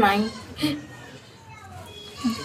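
Speech only: a woman's voice trails off, says one more brief syllable, then pauses. Faint voices continue in the background during the pause.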